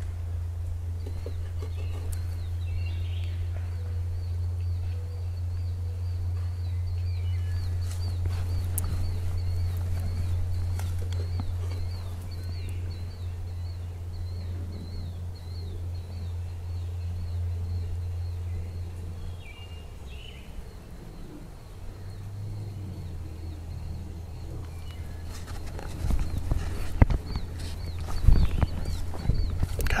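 Woodland ambience: scattered bird chirps and a thin, continuous high-pitched trill over a steady low rumble that drops away about two-thirds of the way through. Near the end come several sharp knocks and handling noises.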